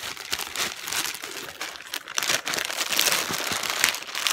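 Clear plastic bags crinkling and rustling as hands rummage through them in a cardboard box, a continuous crackle that grows louder about halfway through.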